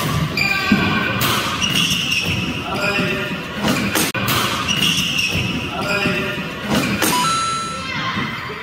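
Badminton doubles rally in a hall: sharp racket strikes on the shuttlecock about once a second, with short squeaks of court shoes on the floor between the strikes.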